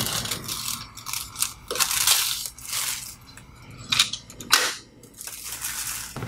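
Plastic clicks, snaps and scraping as the print head lock lever on a Canon imagePROGRAF PRO-4000 printer's carriage is worked open by hand, several sharp snaps spread through, the strongest about two and four seconds in.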